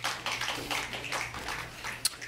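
Audience applauding with irregular, scattered claps, over a low steady hum.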